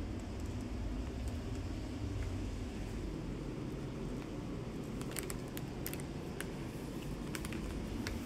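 Steady low rumble of indoor background noise, with a few faint clicks about five seconds in and again near the end.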